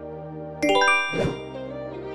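A bright chime sound effect about half a second in, a quick run of bell-like notes stepping down in pitch, as the quiz's countdown timer runs out. A short whoosh follows, over steady background music.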